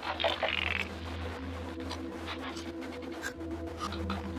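Post-industrial ambient drone: a steady low hum under sustained mid-pitched tones, with a short buzzy, high-pitched burst in the first second and scattered faint clicks.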